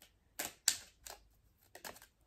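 A few short, irregularly spaced clicks and snaps of a deck of oracle cards being handled and turned over in the hands.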